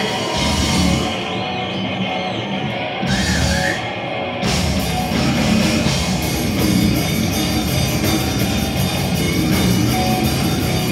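A slam death metal band playing live: down-tuned guitars, bass and drums come in shortly after the start, and the full kit with cymbals joins from about four and a half seconds in.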